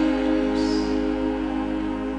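Live ensemble of strings and keyboard holding one sustained chord that slowly fades.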